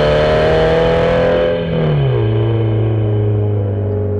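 Toyota GT86's FA20 flat-four engine with an aftermarket exhaust, running at steady revs. About two seconds in its note drops in pitch as the revs fall. The sound turns muffled partway through as the treble fades away.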